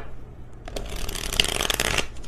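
A deck of tarot cards being shuffled by hand: a dense, rapid patter of card clicks and flutter starting just under a second in.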